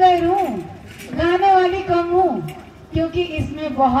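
A woman singing unaccompanied: three phrases of long, steadily held notes, each sliding down in pitch at its end, with short breaths between them.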